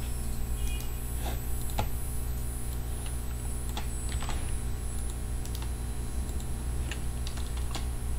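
A few separate clicks of a computer keyboard and mouse, spaced irregularly, as a command is copied and pasted into a terminal, over a steady low electrical hum.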